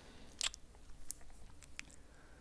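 A few faint, short clicks over quiet room tone. The sharpest comes about half a second in, and two fainter ticks follow later.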